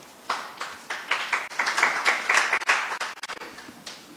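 Audience applause: a round of clapping that starts just after the beginning, swells, and dies away shortly before the end.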